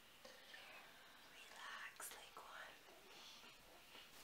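Faint whispering in short breathy phrases, with a single sharp click about two seconds in.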